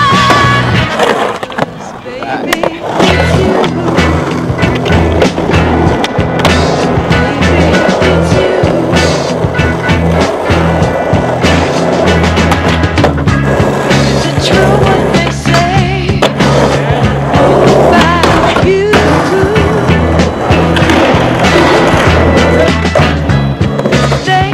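Skateboard wheels rolling on concrete and asphalt, with repeated sharp clacks of the board popping and landing, mixed under a music track with a steady bass line.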